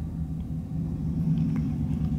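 A low, steady hum with a faint rumble underneath.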